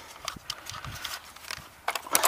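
Scattered small clicks and taps of fingers working on the plastic body of a Hubsan X4 Pro H109 quadcopter, tucking loose wires into its battery compartment.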